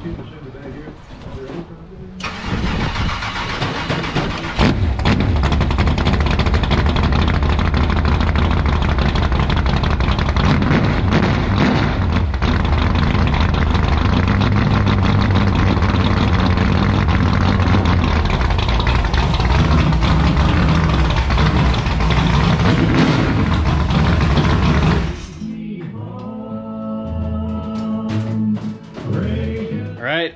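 A dirt-track stock car's engine starts about two seconds in and runs loudly, stepping up in level a couple of seconds later, then stops abruptly near the end. A few seconds of pitched tones follow.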